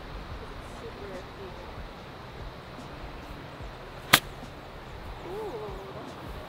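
A 54-degree golf wedge striking a ball on an approach shot from the rough: one sharp click about four seconds in.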